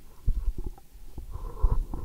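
Microphone handling noise: a series of low thumps and rubbing as a stand microphone is picked up and passed along a table to another person.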